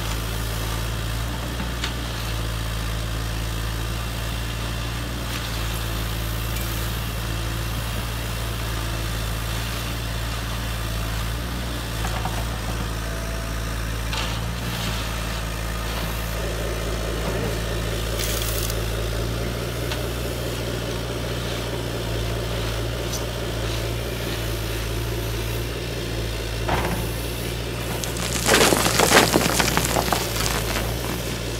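Radio-controlled Caterpillar model excavator humming steadily as its bucket works through gravel, with stones grinding and scraping. Near the end comes a loud rattling crunch of stones pouring from the bucket into a dump truck's bed.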